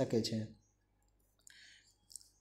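Speech ends about half a second in. Near silence follows, broken by one faint short click about a second and a half in.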